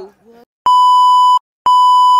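Two identical electronic beeps, each a steady high tone lasting under a second with a short silent gap between them: an edited-in sound effect over a static-glitch video transition.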